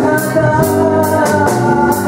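Live band music: held chords over a drum kit, with a cymbal struck on a steady beat about twice a second.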